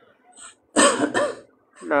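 A man clearing his throat once, about a second in, a short rough burst of voice and breath. He starts speaking again just after.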